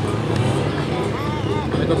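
Suzuki GSX-R750 inline-four sport bike engine running on the cone course, its pitch rising and falling a couple of times in quick throttle blips around the middle.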